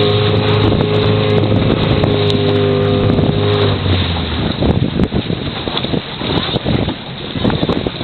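Outboard motor of the coach boat running steadily, dropping away a little before halfway through, after which wind buffets the microphone over water splashing.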